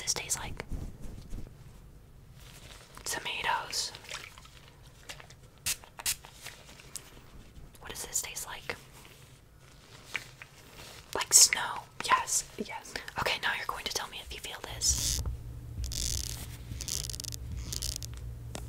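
Soft whispering close to the microphone, in short scattered phrases, with a stretch of rustling handling noise near the end.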